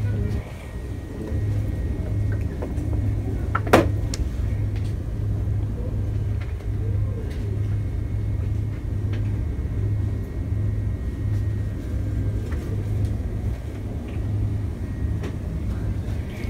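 Low rumble of a handheld camera microphone being carried through a store, pulsing at roughly walking pace, with one sharp click about four seconds in.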